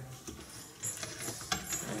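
Faint scuffing and a few light clicks as a large rabbit's feet and claws shift on a wooden board while a hand holds it.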